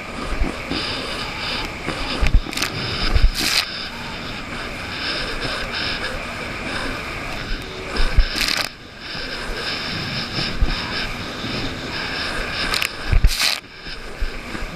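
Jet ski running across choppy water: a steady engine drone and rushing water, broken by several loud slaps and splashes as the hull hits the chop.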